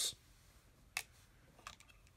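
Small clear-plastic weathering-powder cases and the plastic model handled on a paper-covered tabletop: one sharp click about a second in, then two fainter clicks near the end.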